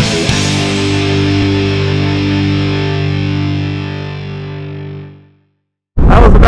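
Rock intro music: a distorted electric guitar chord struck once and left to ring, fading out over about five seconds into silence.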